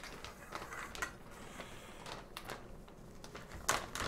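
Faint rustling of reflector cloth, with light taps, as a thin support rod is pushed through the cloth's fabric sleeve. A sharper click comes near the end.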